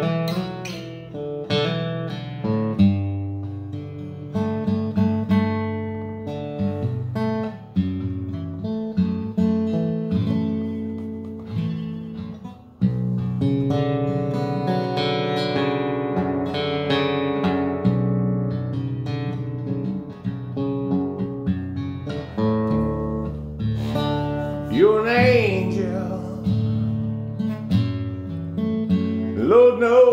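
Acoustic guitar played by hand, an instrumental passage of picked notes and chords. A man's voice comes in briefly near the end.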